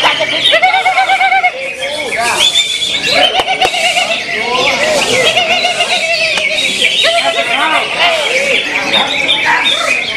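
Green leafbird (cucak hijau) singing in loud, varied warbling and trilled phrases, with several other caged songbirds singing over it at once.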